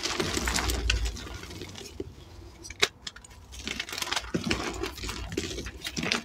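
Hands crushing and crumbling blocks of dyed, reformed gym chalk: dry crunching and crackling as the chalk breaks apart, with one sharp snap a little under three seconds in, then more crumbling.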